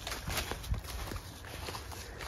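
Footsteps through dry leaf litter and brush, irregular steps with a heavier thump about three-quarters of a second in.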